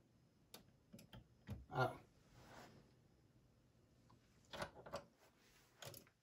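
Faint, scattered clicks and light taps of hands handling a Fisher MT-6330 turntable's tonearm and controls, in a few small clusters with near silence between.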